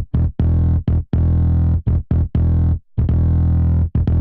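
Virtual electric bass from the UJAM Virtual Bassist SLAP plugin playing one of its preset finger-style Common Phrases. It is a rhythmic line of loud, low notes, several short and detached with brief gaps between them and a few held longer.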